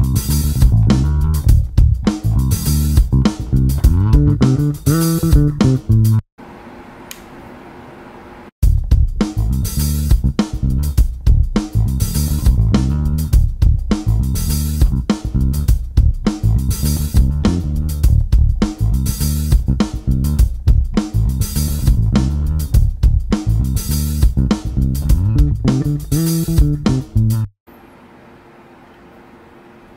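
Lakland 55-94 Deluxe five-string electric bass played solo, a busy line of sharply plucked notes with a strong low end. The playing breaks off for about two seconds a quarter of the way in, then carries on until just before the end.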